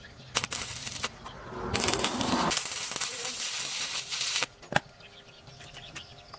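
Light metallic clicks from pliers and tools being handled at a steel bench vise, with a steady rasping noise of about three seconds in the middle and one more click after it.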